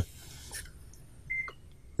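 Quiet room tone with one short, faint high beep a little over a second in, followed by a soft click.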